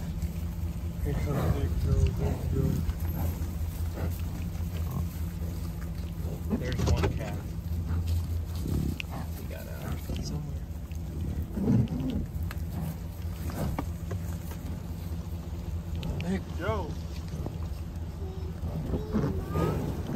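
American bison grunting at irregular intervals as the herd mills around close by, over a steady low hum.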